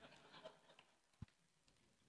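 Near silence: room tone, with one faint short low thump just after a second in.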